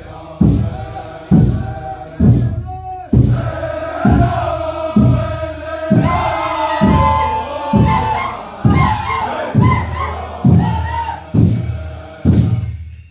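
Group chanting a Hopi deer dance song over a steady beat of about one stroke a second. The singing breaks off briefly about three seconds in, then resumes.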